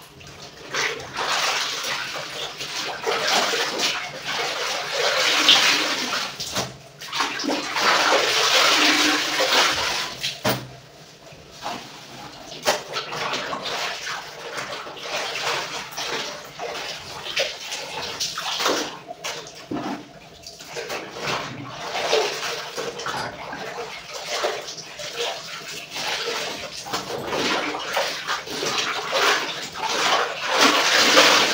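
Clothes being rinsed by hand in a large tub of water: irregular splashing and sloshing as garments are lifted out, dunked and swished, with quieter stretches about a third of the way in and again about two-thirds in.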